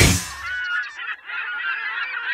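Heavy metal music cuts off at the start, leaving a clamour of many overlapping, wavering high-pitched calls from the cartoon's soundtrack.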